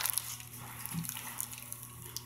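Plastic film wrapped around a roll of vinyl crinkling and crackling as it is handled, a scatter of small irregular crackles over a faint steady hum.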